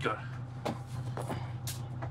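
Steady low hum inside a running ambulance, with a few short, irregular clicks over it.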